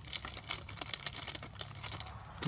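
Plastic snack packet crinkling as it is handled in both hands: a quick, irregular run of sharp crackles.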